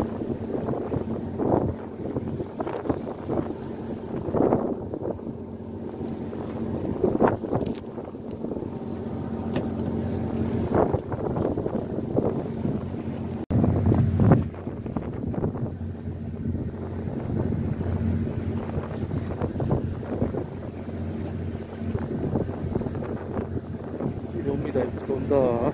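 A fishing boat's engine running steadily at sea, with wind on the microphone. Scattered knocks and rustles come from handling the catch and gear on deck.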